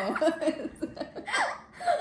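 A girl and a young woman laughing together in short bursts, with a brief lull about one and a half seconds in before the laughter picks up again.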